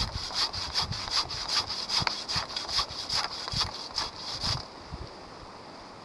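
Folding pruning saw cutting through a thin tree trunk in quick, even back-and-forth strokes, stopping about four and a half seconds in.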